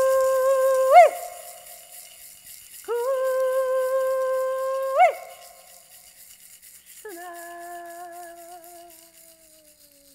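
A woman's voice sings two long, steady held notes, each ending in a sharp upward whoop, then a softer, lower held note that sinks slightly and fades out near the end. A handheld rattle shakes faintly under the first notes.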